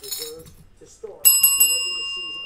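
A metal service bell struck once about a second in, ringing on with a clear, bright pitch and several high overtones as it slowly dies away. It is rung to mark a big hit, a one-of-one card.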